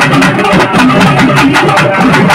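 Temple festival band playing: fast, continuous drumming with a long wind pipe's melody weaving over it, loud and dense.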